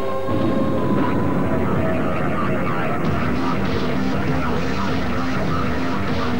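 Television advert soundtrack: music with a loud rushing, rumbling sound effect laid over it, starting a moment in and running on.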